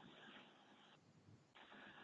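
Near silence: a faint steady hiss in a pause between spoken phrases, dropping out briefly around the middle.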